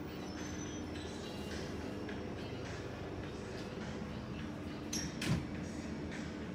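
Convenience-store room tone: a steady hum from the glass-door refrigerated drink cases, with soft footsteps on the tiled floor. A brief sharp knock stands out about five seconds in.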